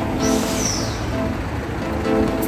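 Road traffic passing close by on a busy city street, with a sharp hiss about a quarter-second in that falls in pitch, over background music.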